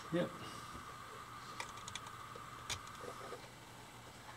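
Light clicks and taps of wire leads being handled and fitted onto the terminal posts of a DC electric motor, the sharpest click a little before three seconds in. Under it, a faint steady high hum stops just after three seconds.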